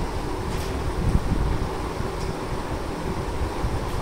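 Steady low rumbling hum of a room air conditioner, with a few faint brief sounds of movement.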